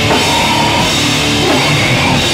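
A heavy rock band playing loud and live: a drum kit with cymbals drives under held guitar chords, with the chord changing about a second and a half in.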